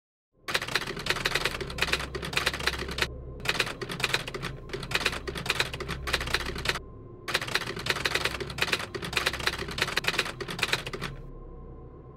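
Typewriter keys clacking in quick runs: three bursts of typing with short pauses between, over a low steady hum.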